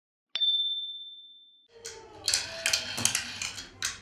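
A single bright electronic ding from a TV channel's logo ident, ringing out and fading over about a second. About two seconds in, a run of light clicks and clatter follows.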